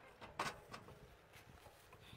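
A few faint knocks and clunks, the loudest about half a second in.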